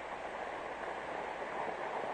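Steady hiss and background noise of a 1950s sermon recording during a pause in the speech.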